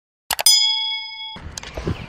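Sound effect for a subscribe-button animation: a quick mouse double-click followed by a bright bell-like ding. The ding cuts off suddenly about a second later, giving way to faint outdoor background noise.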